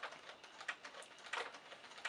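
A few faint metallic clicks from a keypad door lock's lever handle and latch being worked with the key in the cylinder, just after the key has turned it to unlock.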